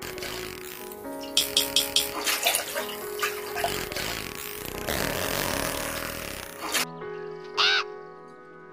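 Dolphin recording: a quick series of sharp clicks about a second in, over a steady wash of water noise that stops shortly before the end, with background music throughout. A short pitched call rises and falls near the end.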